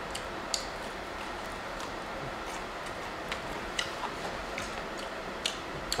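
A person chewing spicy fried chicken wings: about nine faint, irregular mouth clicks and crunches over quiet room noise.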